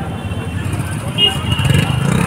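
Busy street traffic: a motorcycle engine running close by over the rumble of passing vehicles and crowd voices, with a steady high-pitched tone coming in a little past halfway.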